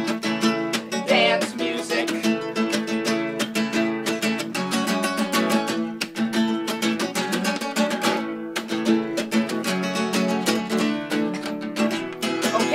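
Acoustic guitar strummed in a quick, steady rhythm, with no singing over it.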